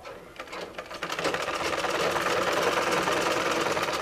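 Black domestic sewing machine stitching a seam through fabric, running at a fast, even rate. It picks up speed over the first second and stops right at the end.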